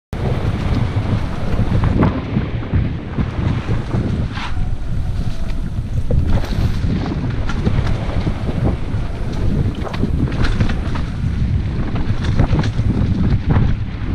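Heavy wind buffeting the camera's microphone during a mountain-bike descent on dirt singletrack, with scattered clicks and rattles from the bike over the rough trail.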